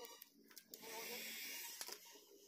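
Backing liner being peeled off a sheet of red adhesive vinyl sticker, a papery rustle lasting about a second, with a few small clicks of the film being handled.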